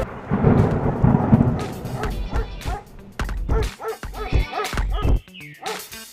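A low rumbling swell, then a dog barking in a string of short, sharp barks, with music faint underneath.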